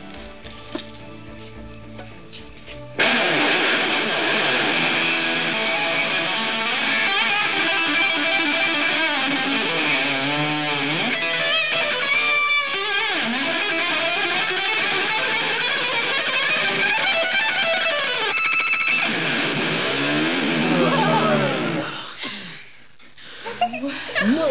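Electric guitar solo. A few quieter notes open it, then about three seconds in a loud lead line starts, with fast runs and string bends, and it dies away shortly before the end.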